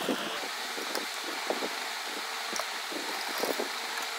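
Light rustling and a few irregular clicks of cotton cloth being folded into pleats and set under a sewing machine's presser foot, over a steady hiss of room noise; the machine itself is not stitching.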